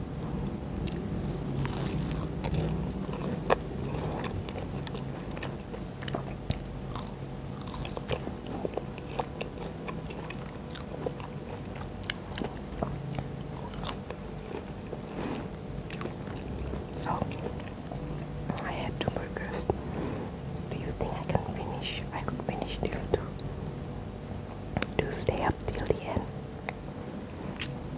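Close-miked biting and chewing of sauce-coated waffle fries: many short, crisp clicks of bites and chews, one after another.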